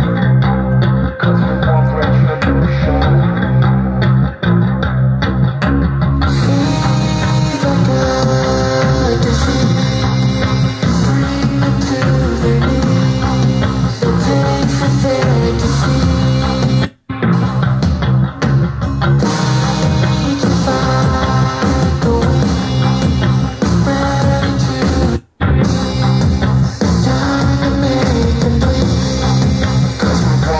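A rock/heavy-metal song with electric guitars, bass and drums playing through a Tribit StormBox Blast Bluetooth speaker at half volume. The music cuts out for an instant twice, a little past halfway and again later.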